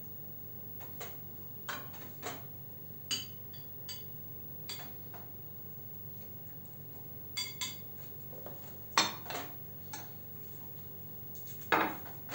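A metal serving spoon clinks and scrapes against a pan and a ceramic plate as chicken and potato stew is dished out, in a dozen or so short, irregular clinks. Just before the end, a louder knock comes as the plate is set down on the countertop.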